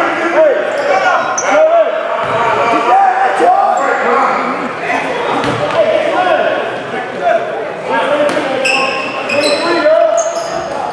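Basketball dribbled on a hardwood gym floor amid indistinct shouting from players and spectators, echoing in a large gym. Sneakers squeak sharply on the court several times near the end as play moves.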